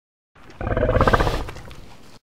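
Dinosaur roar sound effect: a growling roar that starts low about a third of a second in, swells quickly to full loudness, and fades off near the end.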